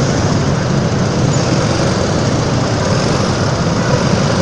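Steady traffic noise of motorcycles and scooters crawling in a dense jam, their engines running low and even.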